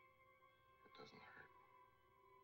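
Near silence: the faint steady hum of an old film soundtrack, with one brief faint whisper about a second in.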